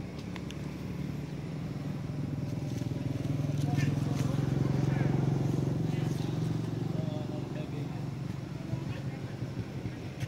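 Engine of a passing motor vehicle: a low, steady hum that grows louder toward the middle and then fades away.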